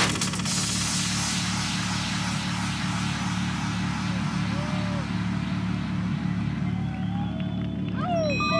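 Minimal techno from a DJ set: a steady bass pulse under a wash of hiss that comes in about half a second in and slowly thins out, with new held synth tones starting right at the end.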